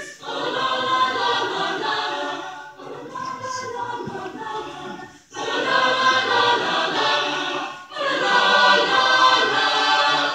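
Mixed chamber choir singing in parts, in phrases of about two to three seconds with brief breaks between them; the phrase in the middle is softer and the last is the loudest.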